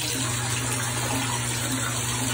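Shower water running steadily onto a bathtub floor, with a low hum beneath it.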